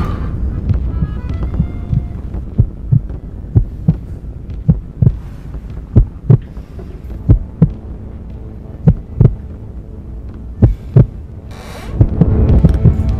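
Heartbeat sound effect over a low hum: pairs of low thumps that come more slowly toward the end. A rising rush of noise comes just before the end.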